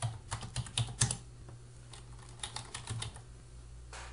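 Typing on a computer keyboard: a quick run of key clicks in the first second, a pause, then a second run about two and a half seconds in.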